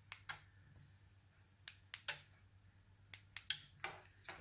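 About eight short, sharp clicks at uneven intervals, a few bunched near the end, as a Sonoff 4CH Pro relay board is switched from its RF key fob: fob button presses and the board's relays clicking over.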